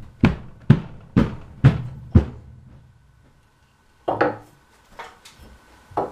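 Six evenly spaced thumps on wood, about two a second, each with a short ring, stop about two and a half seconds in. A single shorter knock follows about four seconds in.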